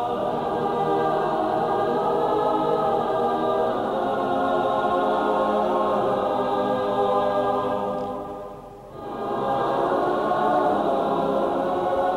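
Music from an ensemble holding slow, sustained chords. About eight seconds in the chord fades to a short break, and the music resumes a second later. The sound is dull, cut off above the upper treble as on an old VHS recording.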